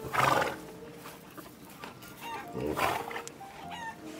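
A horse whinnies twice, about two and a half seconds apart, over faint background music.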